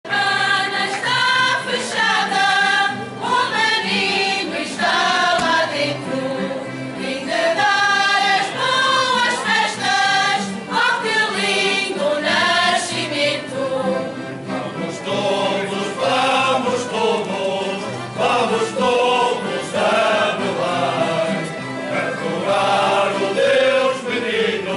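A mixed group of men's and women's voices singing a Portuguese Epiphany carol (cantar dos Reis) together, a Ranchos de Reis group singing as it walks in procession.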